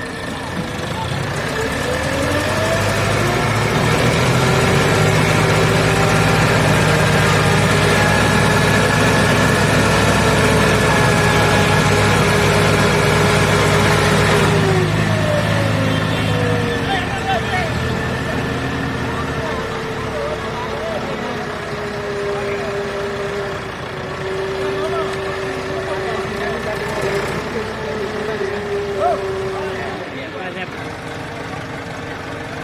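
Tractor diesel engine revved up hard under load, pulling a mud-stuck tractor and loaded trolley. It climbs in pitch a second or two in, holds high and loud for about twelve seconds, then falls back to a lower, uneven speed for the rest of the time.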